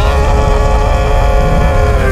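Sound effect of a huge explosion: a loud, deep rumble with a long, steady, high pitched note held over it, which glides up into place at the start.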